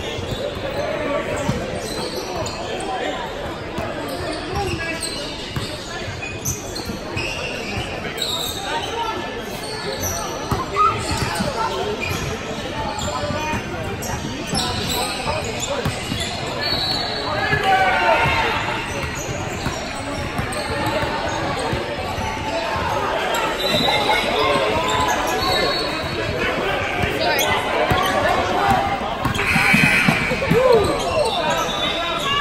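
Basketball game in a gym: a ball bouncing on a hardwood court, short high sneaker squeaks and players and spectators calling out, all echoing in the large hall.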